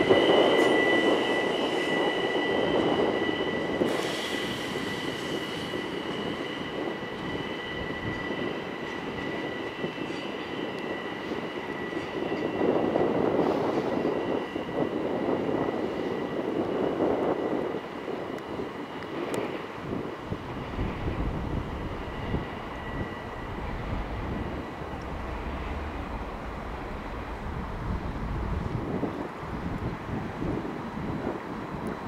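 ÖBB class 4024 Talent electric multiple unit rolling away over curved track and points, its wheels squealing in two steady high tones over the rumble of wheels on rail. The squeal and rumble fade as it draws away.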